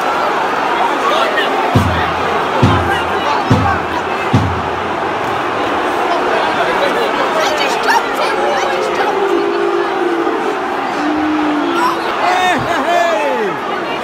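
Football stadium crowd shouting and calling out, a loud, dense wash of many voices during a scuffle between players. Four low thumps come about a second apart in the first few seconds.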